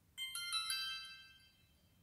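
Xiaomi Yi 4K+ action camera playing its short startup chime, a quick run of about four electronic notes that fades out within about a second and a half. It marks the camera rebooting once the firmware update has finished.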